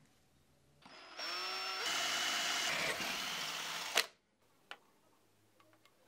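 Cordless drill motor speeding up with a rising whine about a second in, running steadily for about three seconds, then cut off sharply with a click. A light tap follows.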